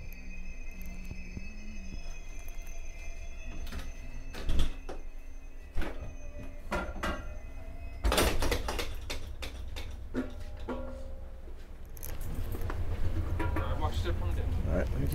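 Low steady rumble inside an Amtrak passenger car as the train draws into a station, with scattered clicks and knocks. About eight seconds in comes a clunk and a sudden rush of outside noise as the conductor opens the car's vestibule door.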